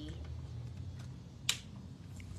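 A single sharp click about one and a half seconds in, over a low steady hum.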